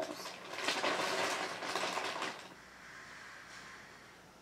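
Water rushing for about two and a half seconds, then dropping away to faint hiss.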